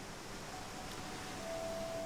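Faint hiss, then a soft, steady single held note that comes in about halfway and grows a little louder near the end: a sustained note of quiet film underscore.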